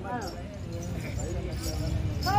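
A man's voice calling out briefly at the start, then fainter, over light clip-clop-like taps and a low rumble, between sung passages of a Tamil street-theatre play.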